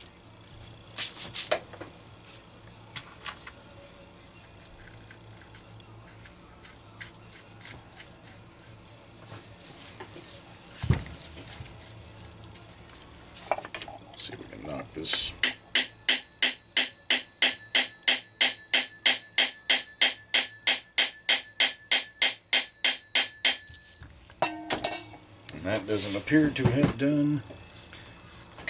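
Light, rapid hammer taps on the nut-protected end of a Homelite VI-955 chainsaw's crankshaft, about four a second for some eight seconds, each with a metallic ring, to drive the crankshaft and separate the crankcase halves.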